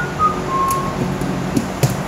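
A man whistling a few faint notes that step down in pitch, over a steady low background hum, with a few light clicks of handling on the bench near the end.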